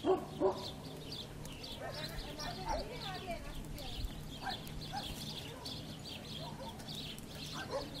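A dog barking twice in quick succession, the loudest sounds here. Over it, small garden birds (sparrows and great tits) keep up a steady stream of short high chirps.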